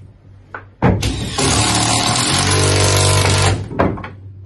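A power tool runs in one loud burst of nearly three seconds, starting about a second in: a steady motor whine under a rough, hissing noise.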